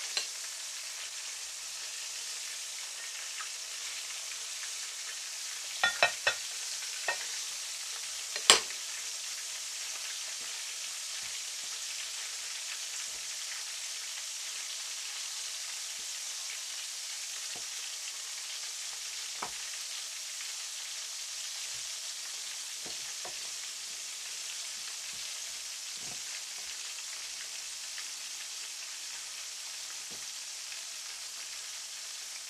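Cornflour-coated beef strips deep-frying in hot oil in a wok, a steady sizzling hiss. A few sharp clicks and knocks sound over it, the loudest about eight and a half seconds in.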